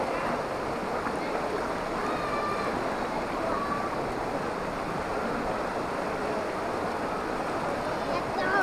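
River water rushing steadily over a rock ledge and through shallow rapids.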